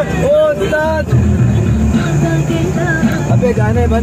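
Jeep running over a rough mountain track, its engine and body rumbling steadily while passengers are jolted about. Passengers' voices call out in long drawn-out tones in the first second and again near the end.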